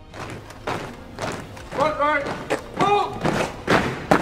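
Guardsmen's drill: boots stamping and rifles struck in unison as a series of sharp thumps, with a shouted word of command about two seconds in and again about three seconds in.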